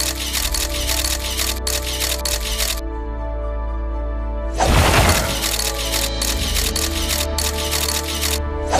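Background music with sustained low notes, overlaid by a dense crackling noise that stops about three seconds in and comes back loudly about four and a half seconds in.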